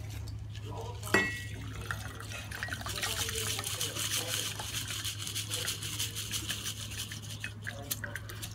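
A short clink about a second in, then ice-cold shaken martini pouring from a metal cocktail shaker into a chilled martini glass, a steady stream of liquid lasting several seconds.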